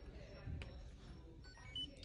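Newborn hearing screener giving a few short electronic beeps rising in pitch near the end, signalling that the test has picked up a clear response from the baby's ear. Faint handling rustle and a soft tick underneath.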